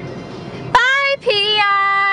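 Low road noise inside a moving car's cabin, then, under a second in, a high voice sings two long held notes, the second one steady.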